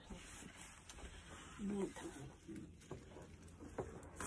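Quiet draw on a Crave Max disposable vape: a faint airy hiss of breath pulled through the device, with a brief low hum from the throat about two seconds in and a few faint clicks.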